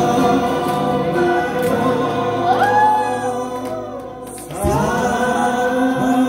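A small group singing together to acoustic guitars. The voices hold long notes, drop back briefly about four seconds in, then come in again together.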